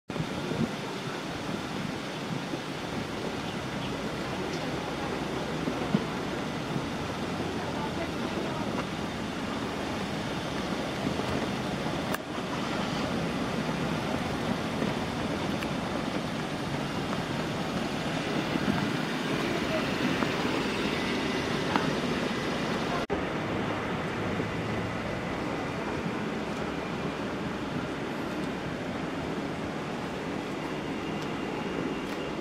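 Steady outdoor background noise: indistinct distant voices and road traffic, with abrupt cuts about 12 and 23 seconds in.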